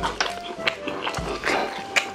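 Close-miked chewing of crispy fried chicken: repeated sharp crunches of the batter with wet mouth sounds, a low thud about every second.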